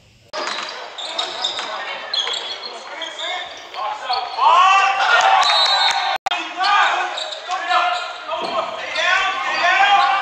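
Basketball game on a gym court: sneakers squeaking on the hardwood and the ball bouncing, in an echoing hall. The sound cuts out for an instant about six seconds in.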